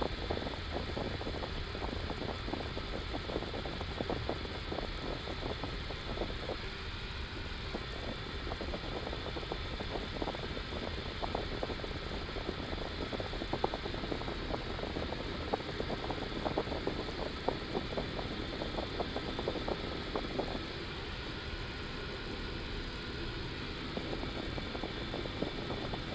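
Steady flight-deck noise of an Airbus A330-200 taxiing on idling engines, heard inside the cockpit: a constant hum and hiss with frequent small clicks and rattles.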